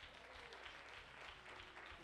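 Church congregation applauding: a steady patter of many hands clapping.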